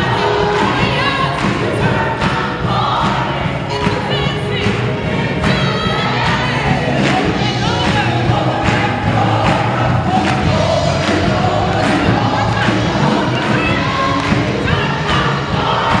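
Gospel choir singing an upbeat song live with band accompaniment, while the audience claps along on the beat.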